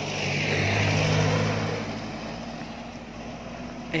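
A motor vehicle passing close by: engine hum and tyre noise, loudest about a second in, then fading away.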